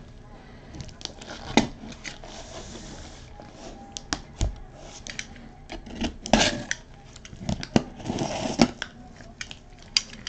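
Cardboard boxes and packaging handled on a table: scattered clicks and knocks, with a couple of short rustles about six and eight seconds in.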